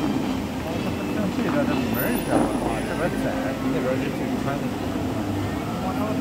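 Steady rushing of the Bellagio fountain's water jets spraying, with a crowd talking in the background.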